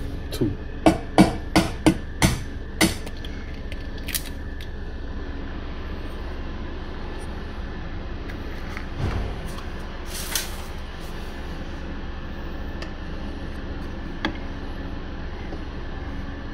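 Eggs being cracked into a steel pot: a run of about eight quick sharp taps in the first three seconds. After that comes a steady low hum with a few faint knocks.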